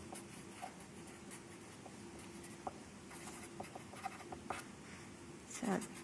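A marker pen writing on paper: faint, intermittent scratching strokes of the tip as a line of words is written.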